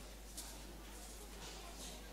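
Faint room tone with a steady low hum under a soft hiss, and a couple of brief faint high hisses.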